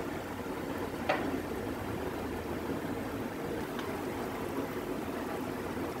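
Steady hiss and hum of a thick onion and cashew masala cooking in a covered pan on an induction cooktop, with one short click about a second in.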